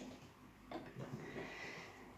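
Faint handling sounds: a soft knock and light rustling as cakes of yarn are picked up and moved on the table.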